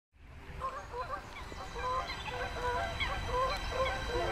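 A flock of geese honking, many short overlapping calls with downward slurs.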